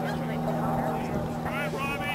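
Voices calling out across a lacrosse field, clustered in the second half, over a steady low hum.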